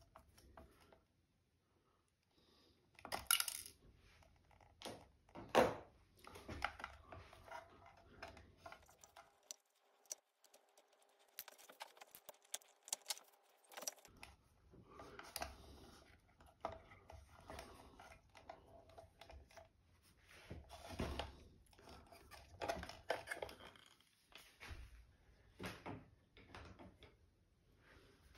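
Faint handling sounds from disassembly work on a trolling motor's speed switch: small metal parts clinking and light clicks and taps as a tiny screw and nut on the switch connections are worked loose and the wiring is handled in the plastic head housing. There is a quieter stretch in the middle.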